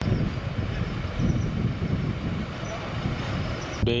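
Steady outdoor background noise, an even rumble and rush heaviest in the low end, with a man's voice starting near the end.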